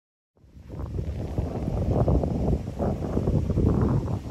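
Wind buffeting the microphone, an uneven, gusting low rumble that starts about half a second in, after a moment of dead silence.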